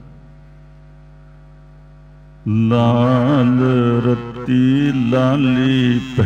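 A faint steady drone of held tones. About two and a half seconds in, a man's voice enters loudly, chanting a Gurbani verse in the melodic, wavering recitation of a Hukamnama reading.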